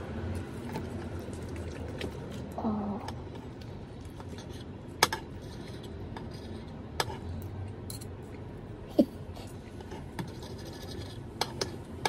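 Knife and fork scraping and clinking against a ceramic plate while sawing through a grilled pork belly, with a handful of sharp clinks spread through.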